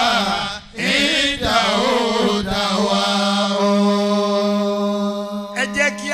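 A man chanting into a microphone in a melodic, drawn-out voice, ending with one long note held for about three seconds. Quick spoken syllables follow near the end.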